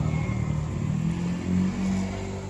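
A low, steady engine hum, its pitch shifting slightly near the end.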